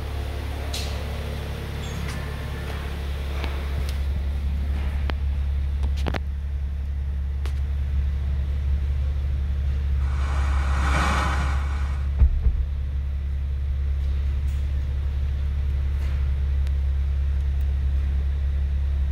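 2018 Kia Stinger's 2.0-litre turbocharged four-cylinder idling steadily, heard as a low rumble inside the cabin. About ten seconds in, a couple of seconds of hiss from the car radio as it is tuned between FM stations, then a couple of short thumps.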